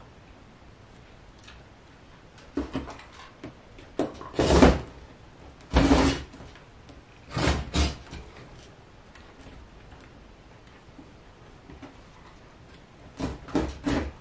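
Rotary cutter slicing through fabric along an acrylic ruler on a cutting mat, in about five short strokes of roughly half a second each, with quiet stretches between them.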